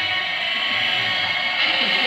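Live rock band music with electric guitars, holding steady sustained chords over a low bass note.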